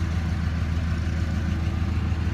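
A 2007 Dodge Ram 2500's 5.9-litre Cummins inline-six turbodiesel idling steadily, heard from inside the cab.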